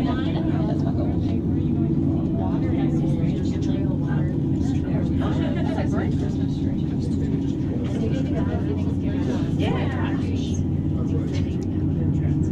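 Steady low drone inside a moving aerial tramway cabin, with other passengers talking indistinctly now and then.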